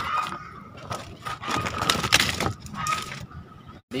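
Broken brick pieces clattering and scraping against each other and the woven plastic of a planter bag as they are handled, in irregular knocks with a denser scraping stretch about two seconds in. It cuts off abruptly just before the end.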